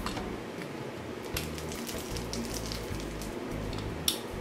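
Spiked uncapping roller rolled over the wax cappings of a honey frame, piercing the capped cells with a soft, scattered crackling of small clicks.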